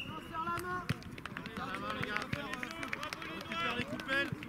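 Children's voices calling and shouting over one another on a football pitch, with scattered sharp knocks.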